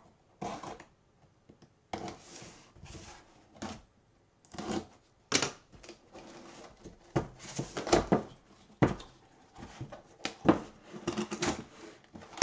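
Cardboard box being handled and opened by gloved hands: irregular rustles and scrapes of cardboard with several sharp knocks, busiest in the second half.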